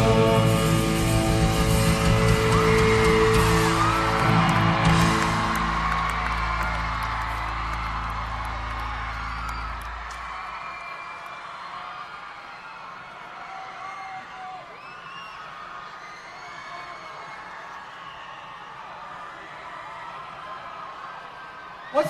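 A live pop-punk band's final chord on electric guitar and bass, with cymbals, ringing out and fading over about ten seconds at the end of a song. The arena crowd cheers and whoops over it, and the cheering carries on after the chord dies away.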